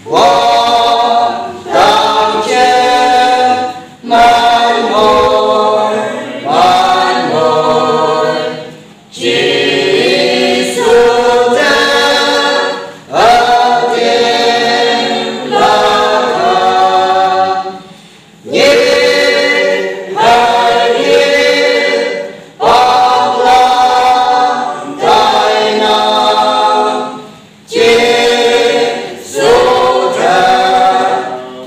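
Small mixed choir of men's and women's voices singing a Konyak gospel hymn unaccompanied, in phrases of a few seconds each with short breaks for breath between them.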